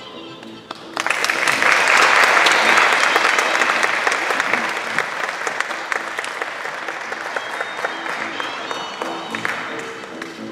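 Audience applauding, starting abruptly about a second in, loudest for the first few seconds and then slowly tapering off, over quiet music with held notes.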